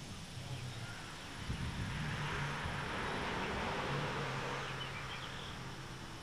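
Bald-faced hornets buzzing around their paper nest: a low wing hum that comes and goes. A soft hiss swells and fades in the middle.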